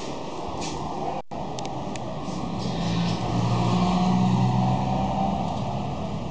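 A motor vehicle passing on the street, its engine hum swelling to a peak about four seconds in and then easing off, over steady traffic noise. A few light clicks of handling near the start.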